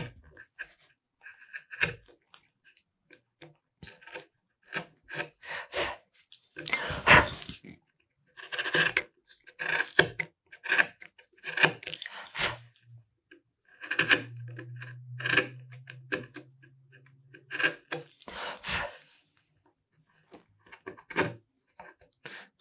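A #3, 6 mm carving gouge pushed by hand through mahogany, making a string of short scraping cuts at irregular intervals as it pares away saw marks. A low steady hum runs for about three seconds past the middle.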